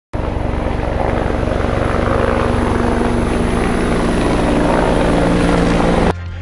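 Loud intro sound effect for a logo animation: a steady, rapidly chopping low rumble under a wide hiss, building slightly and cutting off suddenly at the end.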